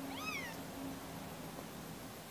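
Young kitten mewing once near the start: a short, high-pitched cry that rises and then falls.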